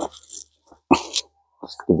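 Short bursts of rustling and crackling close to the microphone, one stronger burst just before the middle, then a man starts to speak near the end.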